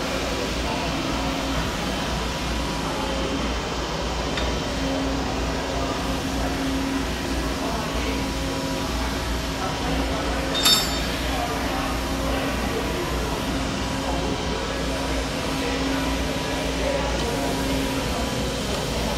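Steady machinery hum with a low drone, and one sharp metallic clink about eleven seconds in.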